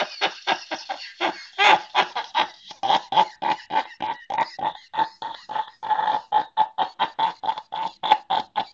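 A man laughing hard and helplessly, in a long unbroken run of short, rapid laugh pulses at about four or five a second.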